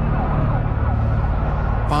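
Emergency vehicle sirens wailing faintly over a steady low rumble of engines, the sound of emergency response at a crane collapse.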